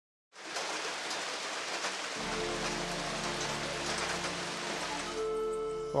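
Rain falling steadily, with sustained music chords coming in about two seconds in; the rain drops away shortly before the end while the music holds.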